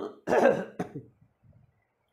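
A man clears his throat with a cough: three short rough bursts within the first second, the middle one loudest.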